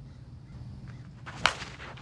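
A slowpitch softball bat strikes a pitched softball once, a single sharp crack about one and a half seconds in. It is a hard-hit ball, which the hitter calls a bomb.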